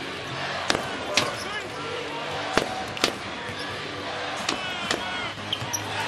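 Basketball bouncing on a hardwood court, about seven sharp, irregularly spaced bounces, with short high squeaks of sneakers on the floor. A steady arena crowd murmur runs underneath.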